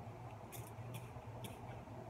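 Plastic trigger spray bottle squirting water mist onto hair: three short spritzes about half a second apart.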